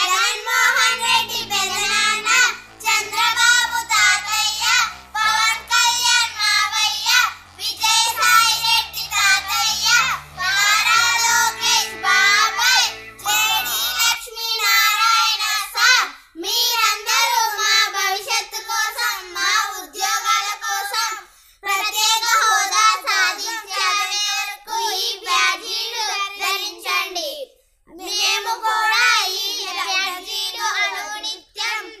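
Three young girls singing a song together. Low musical notes sound under the first half and stop about halfway, leaving the voices alone, with a short pause near the end.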